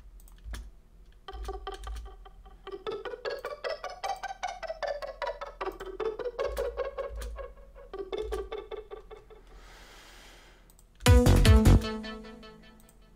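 Synth arpeggio from a Native Instruments Massive patch: short plucky notes step up a G minor scale in eighth notes and then back down. Echoes from the delay are still heard even though it is switched off. Near the end comes a short, much louder burst with heavy low end.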